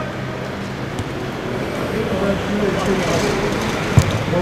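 Open-air football pitch ambience: a steady noisy hum with faint distant shouting from players, ending in a single sharp thump of a football being kicked.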